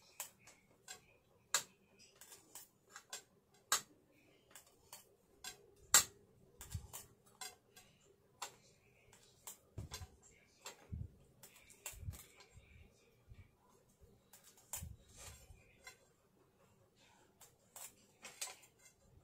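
Pen and metal ruler on a cutting mat: scattered light clicks and taps as the ruler is set down and shifted and pen lines are ruled, with a few soft thumps.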